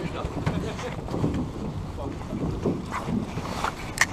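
Wind rumbling on the microphone of a camera aboard a small boat, a steady low buffeting, with faint water and boat noise beneath.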